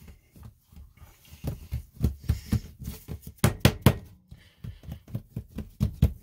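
Hands pressing and patting a strand of bread dough down onto a wooden butcher-block counter to seal its seam: a run of irregular soft knocks and thuds, thickest in the middle.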